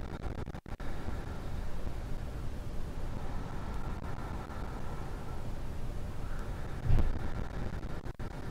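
A steady low rumble of background noise, with one short, louder thump about seven seconds in.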